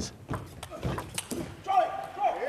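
Table tennis rally: a few sharp clicks of the plastic ball off the rackets and table in quick succession. Then, near the end, a loud shout rings out as the point is won.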